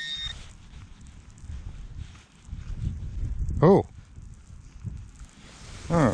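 A metal-detecting pinpointer's steady electronic beep cuts off just after the start, leaving low wind and glove-handling rumble as the find is pulled from the soil. About halfway through there is one short voiced sound, a brief rising hum, which is the loudest moment.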